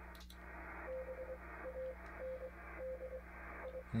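Yaesu FTDX-3000 transceiver switching to 20 meters, with a brief click near the start. Its speaker then plays a received CW (Morse code) signal: a single steady tone keyed on and off slowly over low receiver hum and band noise.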